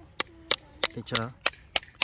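Farrier's hammer driving horseshoe nails into a horse's hoof: a quick series of sharp, evenly spaced strikes, about three a second.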